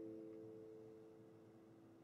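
The last chord of a strummed acoustic guitar ringing out and slowly fading away, with one or two low notes lingering longest.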